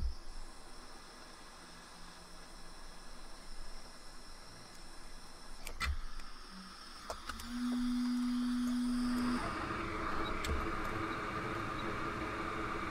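A few light clicks at the repair bench, then a steady low hum for about two seconds. It gives way, about two and a half seconds before the end, to a steady hiss of blowing air over a low hum as a bench rework tool's fan runs while the damaged capacitor is heated off the logic board.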